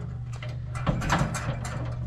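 Oil-coated steel cooking grates just set over hot charcoal, giving a faint sizzle with a few light metal clicks, loudest around the middle.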